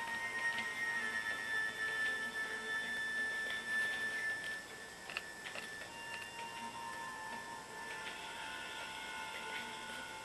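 Faint background music of long held tones, changing pitch about halfway through. A few light clicks from a diamond painting drill pen and its plastic tray sound around the middle.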